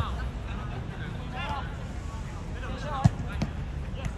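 Football players calling out to each other across the pitch, with the sharp thud of a football being kicked about three seconds in, over a steady low rumble.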